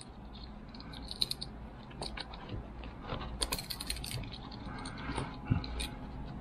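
Light metallic clicks and jingles from a Swiss Army knife Spartan being handled as its corkscrew is worked under a tight paracord knot, with a short cluster of clicks a little past the middle.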